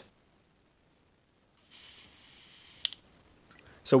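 A breath blown into the fuel inlet of a Honda GX-style carburetor: a breathy hiss lasting just over a second, ending with a sharp click and then a couple of faint ticks. The air does not get past the float needle valve, the sign that its rubber tip seals.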